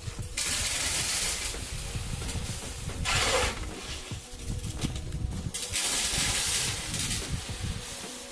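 Gravel scooped with a shovel and tipped down a metal chute, giving a rush of sliding stones several times, each lasting about a second.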